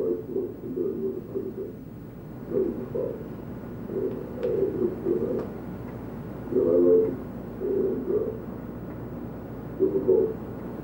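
A muffled, low-fidelity tape recording of a man's voice talking, the words unintelligible and heard only as low, dull syllables over a steady low hum.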